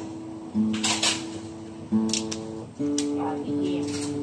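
Acoustic guitar being test-played: single notes and chord tones plucked about half a second in, about two seconds in and near three seconds, each left to ring on.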